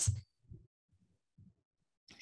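Near silence in a pause of speech, broken by two faint, short, low thumps, about half a second and a second and a half in.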